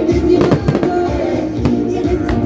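Fireworks bursting overhead, several sharp bangs with crackle in the first half and another bang near the end, over loud music playing through the display's sound system.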